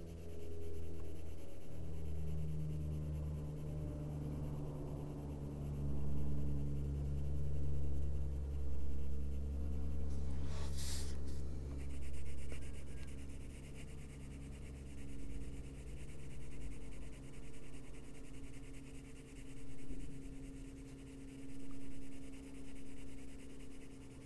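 Coloured pencil rubbing on paper in short back-and-forth shading strokes, the sound rising and falling every second or two, over a steady low hum. A brief hiss comes about ten and a half seconds in.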